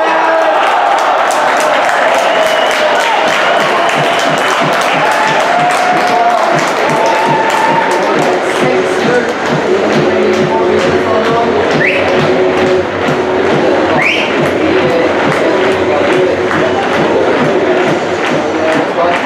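Music with a steady beat, about two beats a second, over a crowd cheering after a goal.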